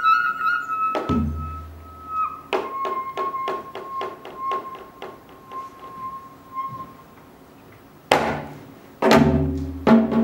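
Sogeum (small Korean bamboo flute) holding a high note, then a slightly lower one, while the janggu (hourglass drum) plays a run of quick light strokes that grow fainter. The flute stops, and two loud, deep drum strokes about a second apart close the phrase.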